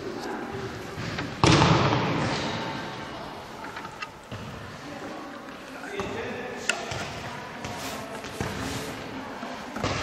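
Background voices with a sudden loud burst of noise about one and a half seconds in that dies away over a couple of seconds, then quieter talk and a few short knocks.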